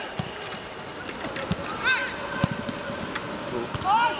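Footballers shouting to each other on the pitch, with a few sharp thuds of the ball being kicked; there is no crowd noise under them.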